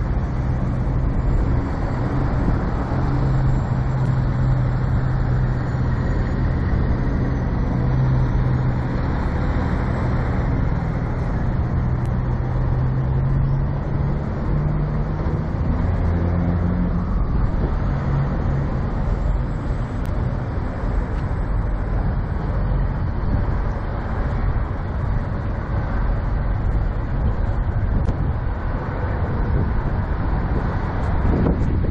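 Steady rumble of diesel semi-truck engines, with a low engine drone that is strongest through the first half and shifts in pitch a little past the middle before fading into the general noise.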